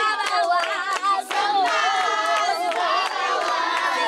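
A group of young voices singing together while hands clap in a steady rhythm.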